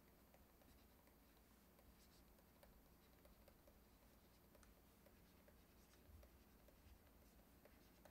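Near silence with faint, scattered ticks and scratches of a stylus writing words on a tablet surface.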